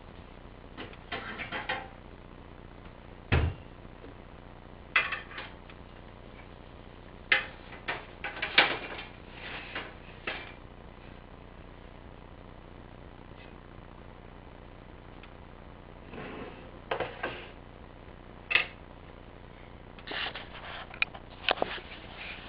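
A cupboard door and dishes being handled: scattered knocks, clicks and clatter in clusters, with a sharp knock about three seconds in.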